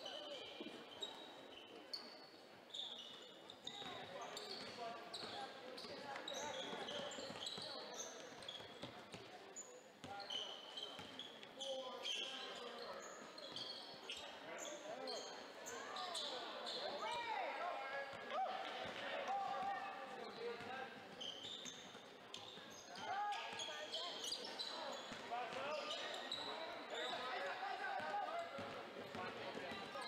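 Basketball game on a hardwood gym floor: a ball dribbling, many short high sneaker squeaks, and players and spectators calling out, with a hall echo.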